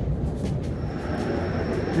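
Underground metro ambience: a steady low rumble and hiss, with a thin high whine coming in just under a second in.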